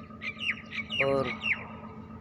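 Bird calls: a quick run of short, sharp chirps, each sliding downward in pitch, repeated several times in under two seconds.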